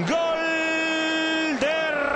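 A Spanish TV football commentator's drawn-out goal call: one long shout held at a steady high pitch for about a second and a half, then a shorter rising call near the end.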